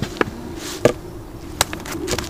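A few sharp clicks and knocks of close-up handling, about four in two seconds, over a faint steady hum.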